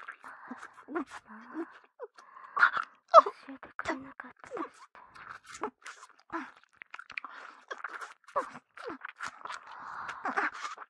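Close-miked ASMR mouth sounds: a steady run of wet sucking and slurping clicks, with short muffled moans and hums in between.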